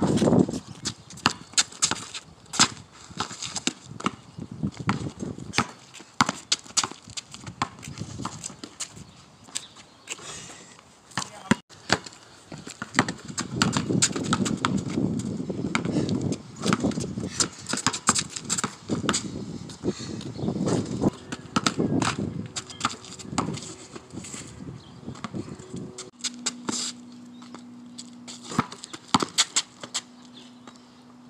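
A basketball being dribbled on asphalt: a long run of sharp, irregularly spaced bounces. A steady low hum comes in near the end.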